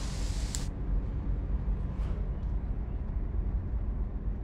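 Car engine idling: a steady low rumble heard from inside the cabin.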